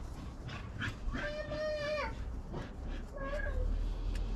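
A dog whining: one long, steady whine lasting about a second, then a shorter one near the end, with faint clicks of hands working in a seedling tray.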